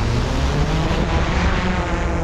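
DJI Mavic 2 quadcopter's propellers whirring as it lifts off, a rushing sound that swells about a second and a half in, with music underneath.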